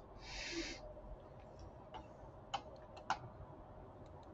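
A quiet room with a short breath near the start, then two faint sharp clicks about half a second apart.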